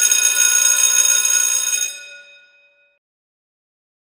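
A logo sting sound effect: a bright, shimmering, bell-like chime made of many steady high ringing tones. It holds level for about two seconds, then fades out.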